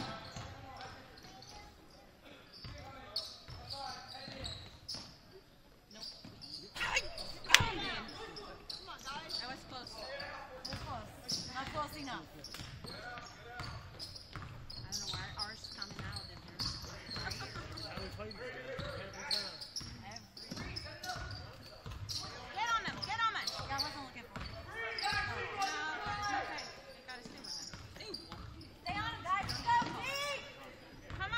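Basketball being dribbled on a hardwood gym floor during live play, with a sharp loud knock about seven seconds in. Players and spectators call out throughout, echoing in the large gym.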